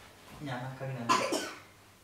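A person's voice: one short vocal outburst lasting about a second, loudest and sharpest just after a second in.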